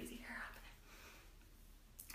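A woman's faint murmured voice, brief and barely above room tone, in the first half second, then near silence: quiet room tone.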